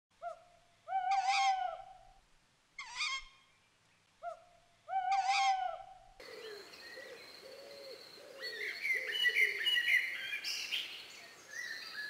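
Bird call sound effects: three loud pitched calls about two seconds apart, followed by softer chirping and twittering of small birds.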